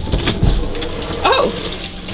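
Hand-held shower head spraying water in a small shower stall: a steady hiss of running water.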